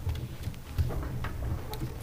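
Soft, irregular knocks and thumps over a low rumble, the handling noise of a presenter getting set up at the lectern.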